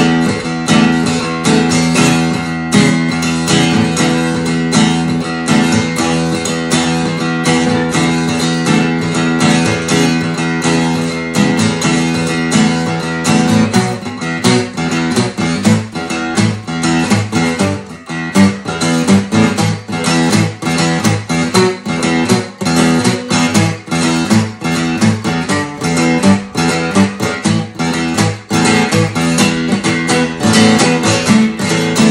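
Martin cutaway acoustic guitar strummed hard with a pick in a steady, driving rhythm. About halfway through, the chord pattern changes to a busier, shifting figure.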